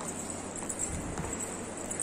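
Footsteps on a hard floor, a few soft irregular steps over a steady background hum.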